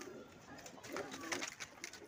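Domestic pigeons cooing faintly in the background, with a few soft clicks.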